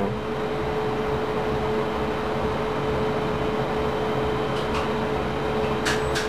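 Steady hum and whir of elevator machine-room equipment, with one constant mid-pitched hum note, while the traction machine stands idle waiting for a call; a sharp click comes right at the end.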